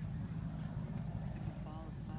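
A steady low rumble, with faint voices of people talking and a brief stretch of speech near the end.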